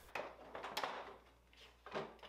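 Faint knocks and clunks of a Triton table saw module being lowered and seated into the metal frame of a Triton Work Centre, a few separate bumps.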